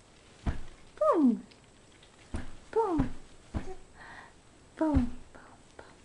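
A baby making three short squealing vocal sounds that fall in pitch, about one, three and five seconds in. Between and under them come a few soft thumps.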